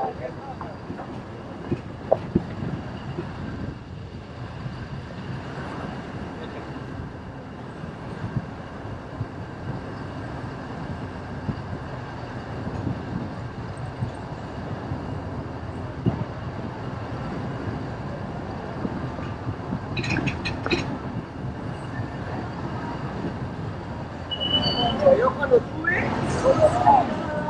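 Road noise heard from inside a moving vehicle: a steady low rumble with frequent small knocks and rattles. Near the end a voice or music comes in.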